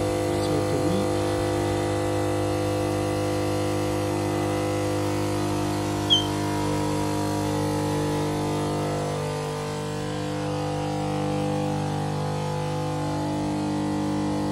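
Electric pump of a Beechcraft Bonanza's TKS fluid de-ice system running with a steady hum, with a brief high chirp about six seconds in.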